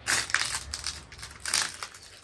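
Debris crunching in a quick run of irregular bursts, loudest at the start.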